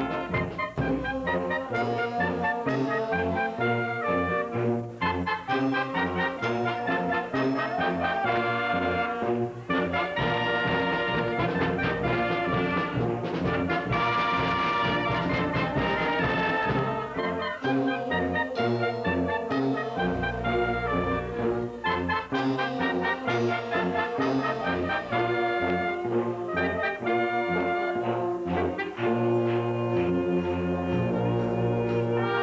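Brass and woodwind band of clarinets, saxophones, French horns and sousaphones playing a medley, with a walking bass line under the melody.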